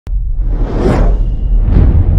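Logo intro sound effects: a loud, sudden start, then two whooshes, one about a second in and one near the end, over a deep, continuous rumble.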